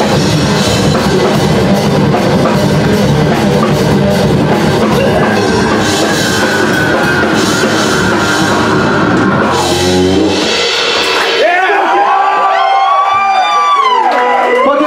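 Live heavy metal band playing loud: distorted guitars, bass and drum kit. The song stops about ten seconds in, and wavering yells and whoops from the crowd follow.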